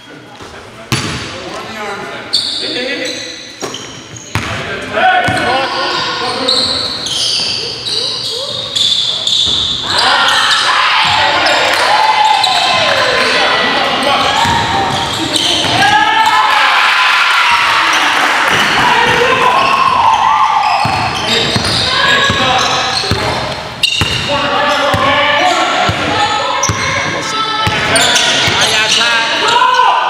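Basketball game on a hardwood gym floor: a ball bouncing and players' indistinct shouting, echoing in the gymnasium, louder from about ten seconds in.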